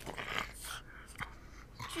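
A sleeping dog snoring, two noisy breaths in the first second, then a small click a little after a second in.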